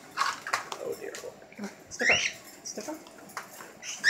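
Cockatiel giving a short rising chirp about two seconds in, with a few soft clicks around it.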